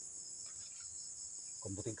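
Faint, steady, high-pitched chorus of insects, an unbroken chirring with no pauses.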